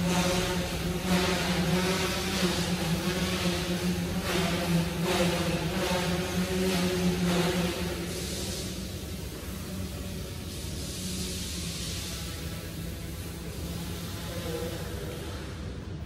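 Goosky S1 micro RC helicopter's motors and rotor blades humming steadily with a buzzing tone in flight, then falling away to a quieter, weaker hum about halfway through.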